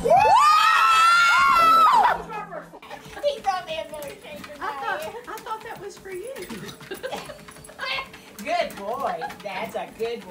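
A loud, high-pitched scream lasting about two seconds, rising at the start and falling away at the end, followed by quieter talking voices.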